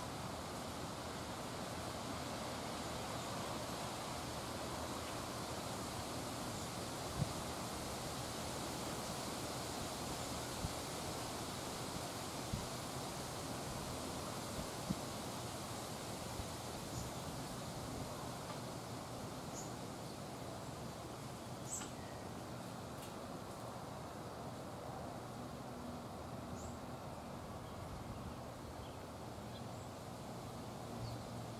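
Outdoor ambience: a steady rushing hiss, with several soft knocks in the first half and a few faint, short bird chirps in the second half.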